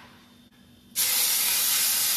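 Chopped red and green chillies hitting hot oil in a pan, sizzling loudly from about a second in, with a sudden start.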